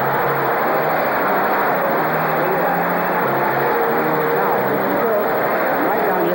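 Audience applauding steadily, with an orchestra playing faintly underneath.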